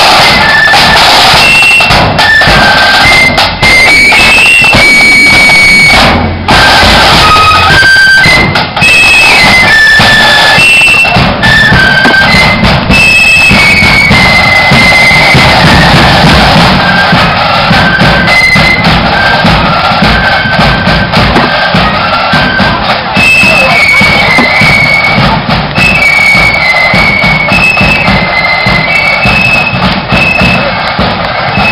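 Marching flute band playing a tune: flutes carry a stepping high melody over steady drumming, very loud.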